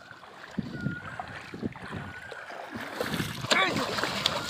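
Legs wading and sloshing through knee-deep river water. Near the end a sharp splash as a bamboo multi-pronged fishing spear (teta) is thrown into the water.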